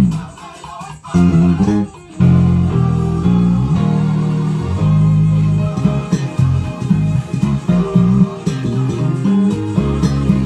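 Electric bass guitar playing a melodic line of changing notes. It is halting for the first couple of seconds, then runs on steadily from about two seconds in.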